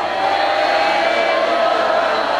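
Concert audience applauding and cheering as a mariachi song ends, with a few faint held instrument tones still sounding under the applause.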